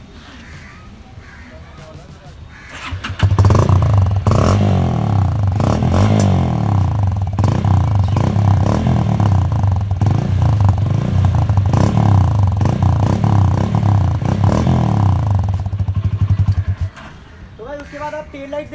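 Motorcycle engine, the Hero Karizma ZMR's 223 cc single-cylinder four-stroke, heard through twin aftermarket Hayabusa-style silencers. It starts up suddenly about three seconds in, runs steadily and loudly, then stops about a second before the end.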